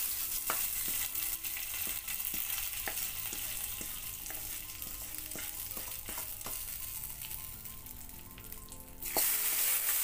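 Hot-oil tempering of mustard seeds, dried red chillies and curry leaves sizzling as it is poured from a small kadai onto a lentil-and-vegetable kootu, with a wooden spatula scraping and tapping against the kadai. The sizzle fades over several seconds, then flares up loudly about nine seconds in as more of the hot tempering is scraped into the pan.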